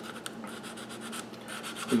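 Faint, light scratching and rubbing as the edge of a Kydex holster is worked by hand with an abrasive to round off a corner.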